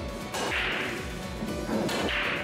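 Nine-ball break shot: the sharp crack of the cue striking the cue ball and then the cue ball smashing into the rack, two cracks each followed by a brief hiss, over background music with a steady beat.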